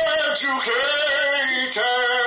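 A man singing loud, long held notes without clear words, with a slight waver; the pitch steps down a little with each of about three notes.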